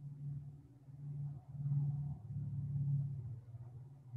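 Low, uneven rumbling hum of background noise over an open video-call microphone, swelling and fading.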